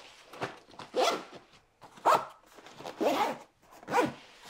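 A backpack zipper pulled shut in about four short strokes, roughly a second apart, with nylon fabric rustling between them as a soft bag is pressed inside.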